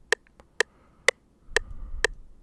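FL Studio's metronome clicking at a tempo of 125 BPM: four short, even ticks, a bit more than two a second.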